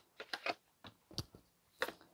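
Tarot cards being shuffled by hand, a series of faint, irregular clicks and soft slaps as cards are passed from one stack to the other, about seven in two seconds.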